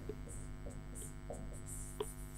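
Steady electrical mains hum, a low buzz with many evenly spaced overtones, with faint short strokes of a pen writing on the board.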